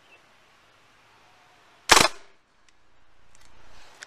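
A Tippmann 98 Custom paintball marker firing a single CO2-powered shot about halfway through: one sharp pop with a short fading tail.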